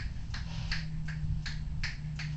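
A steady beat of sharp clicks, a little under three a second, over a faint low hum.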